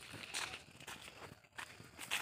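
Faint footsteps and rustling in dry leaf litter on a forest floor.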